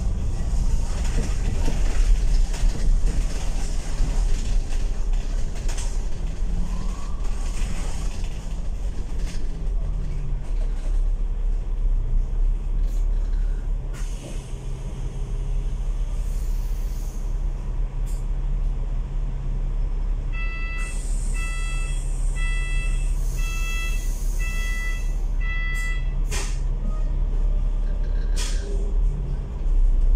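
Alexander Dennis Enviro500 MMC double-decker bus engine running with a steady low hum while the bus is halted in traffic. About twenty seconds in there is an air hiss and a string of about six evenly spaced electronic beeps, followed by a couple of sharp clicks.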